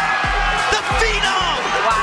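Background music with a beat.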